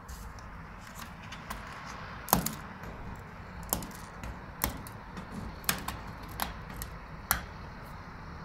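Knuckles and fist rapping on the crust of ice and snow on a balcony's metal railing ledge, chipping off bits of ice: about six sharp knocks a second or so apart, with lighter ticks and clinks between.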